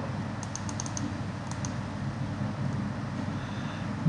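A quick run of faint clicks at the computer about half a second in, and two more a little later, over a steady hiss and low hum.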